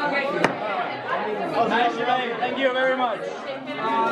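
Several people chattering at once in a large room, with one sharp click about half a second in.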